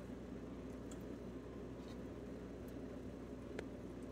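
Quiet kitchen room tone: a low steady hum with a faint hiss and a couple of faint ticks.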